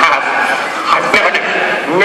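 Voices talking in a large, echoing theatre hall, with a haze of room and audience noise behind them.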